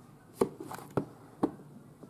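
Hands handling a cardboard camcorder box as it is opened: three sharp knocks about half a second apart, with light rustling between them.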